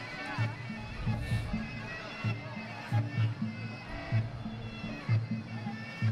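Traditional Muay Thai fight music (sarama): a reedy, bagpipe-like pipe melody over a steady, repeating drum pattern.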